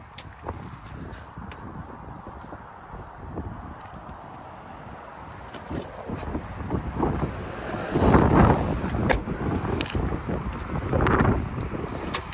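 Outdoor background noise with wind rumbling on the microphone, swelling louder twice, about eight and eleven seconds in.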